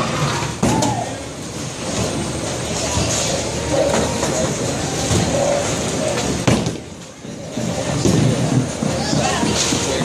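Bowling alley din with voices chattering in the background. There is a sharp knock about half a second in, and a little past halfway comes the loudest sound, a heavy thud as a bowling ball is released onto the wooden lane.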